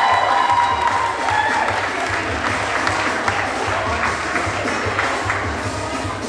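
Audience applauding and cheering in a hall, with music playing underneath.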